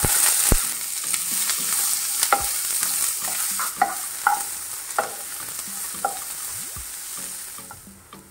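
Chopped onions dropped into hot oil in a nonstick frying pan, sizzling loudly at once, then stirred with a wooden spatula in a series of short scrapes. The sizzle dies down near the end.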